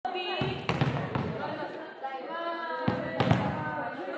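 Volleyballs being hit and bouncing on a sports-hall floor, a handful of sharp thumps, with girls' voices and calls echoing through the hall.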